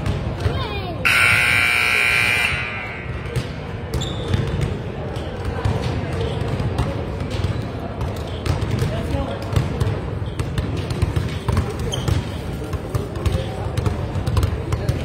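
Gym scoreboard buzzer sounding once for about a second and a half, starting about a second in, marking the end of the third quarter. After it, basketballs bounce repeatedly on the hardwood floor amid chatter in the hall.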